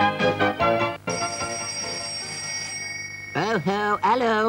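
Cartoon theme music ends about a second in, and a telephone rings with a steady high tone for about two seconds. A voice with a swooping, exaggerated pitch cuts in near the end.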